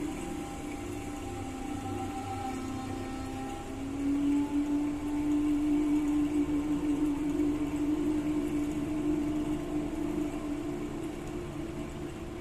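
Live ghazal music: a single low note is held steadily for about seven seconds. It swells in about four seconds in and fades near the end.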